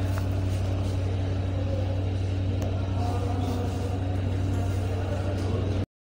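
A steady low hum over background noise, cutting off suddenly just before the end.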